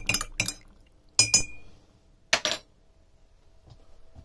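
Metal spoon stirring in a ceramic bowl, clinking against its sides: a quick run of clinks, two more about a second in, then another short run a little past halfway.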